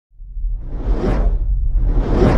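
Cinematic whoosh sound effect over a deep rumble, swelling in from silence and peaking about a second in, with a second whoosh starting near the end.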